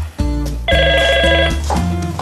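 Office desk telephone ringing: one electronic warbling ring a little under a second long, over background music.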